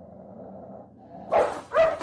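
A dog barking twice in quick succession, about a second and a half in, over a faint low background hum.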